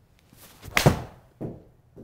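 A 7-iron swing and strike on a Callaway Chrome Soft X golf ball: a brief swish, then one sharp, loud crack of club on ball just under a second in, followed by a softer thud about half a second later.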